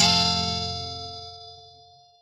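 Closing chord of a Paraguayan conjunto song, guitars and bass struck together and left to ring out, fading away over about two and a half seconds.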